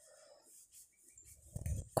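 Quiet room with only faint soft sounds while thread is worked with a crochet hook, then a woman's voice counting starts near the end.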